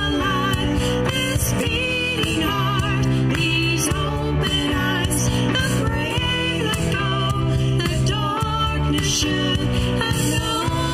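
Live band music: women singing a slow worship song with wavering, vibrato-laden voices over a full band backing.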